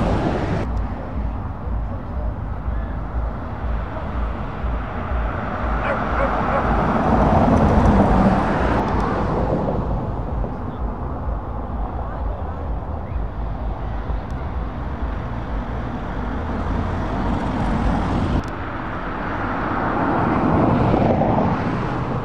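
Vans driving past on a road: engine and tyre noise that swells as one passes about a third of the way in and again near the end, with a sudden drop in level a little over three-quarters of the way through.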